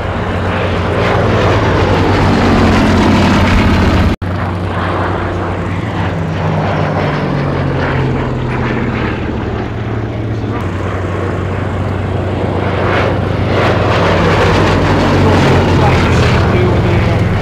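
Vintage biplane's piston engine and propeller running in flight, the pitch rising and falling as the aircraft banks and manoeuvres. There is a momentary drop-out about four seconds in.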